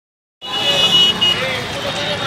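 Street noise with people's voices and a high, steady tone that sounds for about a second after a short silence at the start, with a brief break near its end.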